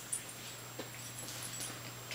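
Small dog tussling with a round fabric dog bed: short scuffling sounds and a few brief whimpering noises, over a steady low hum.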